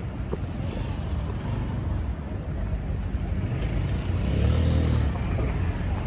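Steady rumble of road traffic, with one vehicle's engine passing close and loudest about four to five seconds in.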